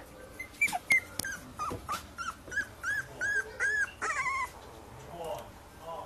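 Staffordshire bull terrier puppy whimpering: a string of short, high-pitched squeaky cries, about three a second, ending in a longer falling cry.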